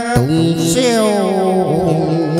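Vietnamese hát văn (chầu văn) ritual music. A held note breaks off just after the start, and a new phrase begins, gliding downward in pitch with a wavering line.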